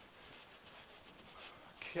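Faint rubbing and scuffing noise from a handheld camera being carried by someone walking across a concrete warehouse floor, with a word of speech starting at the very end.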